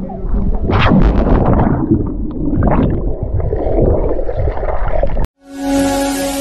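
Water splashing and gurgling, muffled and rushing, as a handheld camera plunges into a swimming pool, loudest about a second in. It cuts off suddenly near the end, and electronic music begins.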